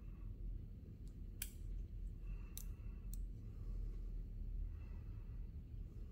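Small neodymium disc magnets snapping onto a speaker's ring magnet, four sharp clicks in the first half.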